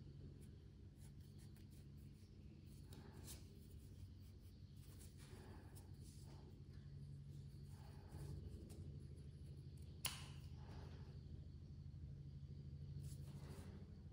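Near silence: faint rustling of yarn and a crocheted piece being handled as a yarn tail is worked through the stitches with a yarn needle, with one small click about ten seconds in.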